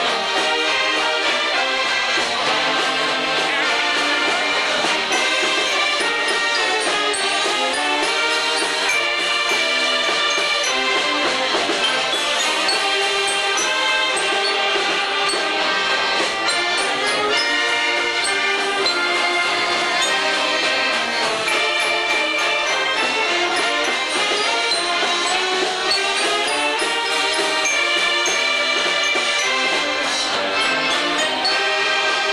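Mummers string band playing a tune without a break: saxophones and accordions carry the melody over banjos and upright string basses.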